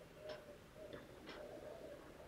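Faint clock ticking, a short tick about once a second.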